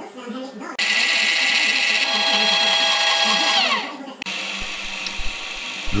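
Milling machine spindle drilling a 3 mm hole in a metal part: a loud hissing whine with steady tones that starts about a second in. Its pitch slides down just before it stops, a little after four seconds.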